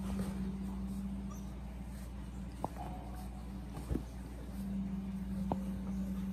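Basset hound puppies playing together, with a few faint whimpers and three short soft knocks over a steady low hum.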